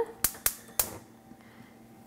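Gas stove burner igniter clicking three times in quick succession as the burner is lit, followed by a faint steady sound.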